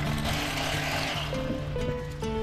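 Background music with held notes that change pitch about halfway through.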